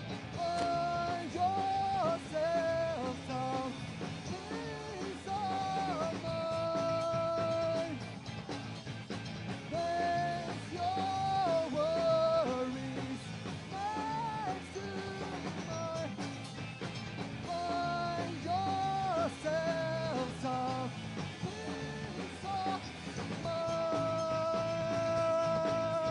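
Punk rock band playing live: electric guitars, bass and drums, with a melodic line running over the full band.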